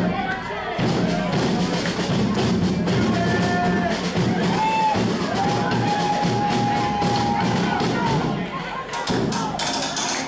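Bass drum and snare drum played together in a marching-band style drum routine, with voices shouting and whooping over the drumming.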